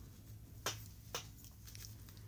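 Two soft clicks about half a second apart, small handling noises of a pen and paper pattern pieces on fabric, over a faint low hum.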